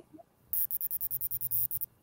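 A rapid, even series of about a dozen short, high clicks, around nine a second, lasting just over a second.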